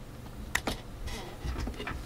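Two quick clicks of computer keys a little over half a second in, with a few softer clicks later and a faint steady hum underneath.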